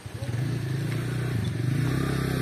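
Motorcycle engine idling steadily, a low even chug that comes in at the start.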